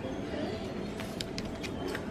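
Shop background hubbub with faint distant voices. About a second in come a few light clicks and rustles as a plastic-hangered multipack of socks is handled and put back on a metal display hook.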